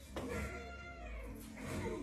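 A cartoon character's high, pitched cry from a cartoon soundtrack, its pitch bending up and down.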